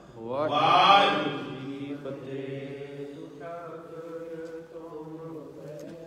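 Devotional chanting by voices on long held notes, with a loud rising swell about half a second in that then settles into steadier sustained tones.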